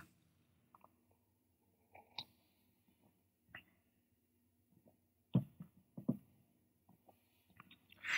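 Faint mouth sounds of a person sipping and tasting beer: a few soft, short clicks and lip smacks over a quiet room, the clearest cluster about five to six seconds in.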